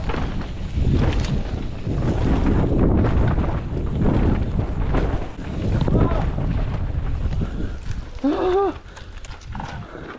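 Mountain bike descending a rough dirt trail, heard from a helmet camera: wind rushing over the mic, tyres rolling over dirt and roots, and the bike rattling and knocking over the bumps. A short shout of a voice comes about eight seconds in.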